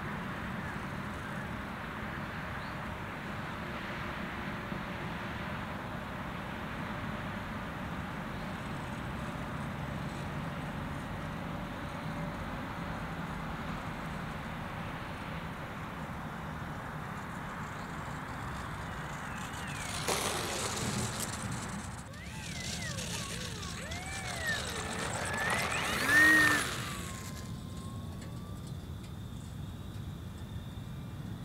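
Steady outdoor background noise, then a brief rush of noise about two-thirds of the way through, followed by the whine of a small electric RC plane motor, its pitch rising and falling with the throttle, loudest just before it drops away.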